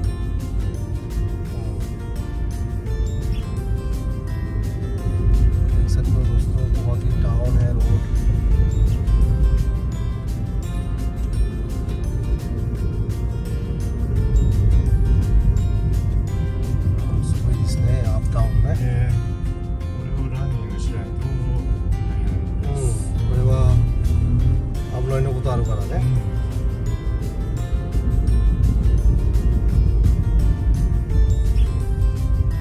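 Background music with a steady beat and a singing voice that comes in at intervals.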